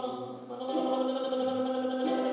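A live rock band's music: a long held chord of sustained notes. It dips briefly about half a second in, then swells back and holds steady.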